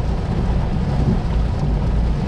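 Rain on a stopped car's windshield and roof, heard from inside the cabin as a steady hiss over a low, even rumble.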